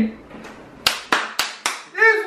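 Four quick, sharp hand claps, about a quarter second apart.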